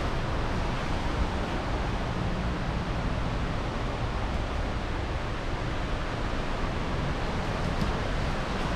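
Steady wash of sea surf and wind, with a low rumble of wind on the microphone.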